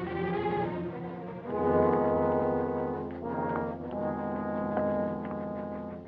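Orchestral film score with held brass chords, swelling louder about a second and a half in and moving to a new chord around the middle.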